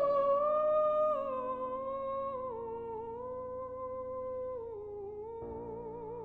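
An operatic soprano voice sings a slow, wordless line that steps down in held notes with wide vibrato and grows quieter, over sustained orchestral chords. A new chord comes in near the end.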